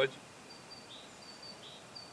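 Faint outdoor ambience with a few short, high bird chirps scattered through it.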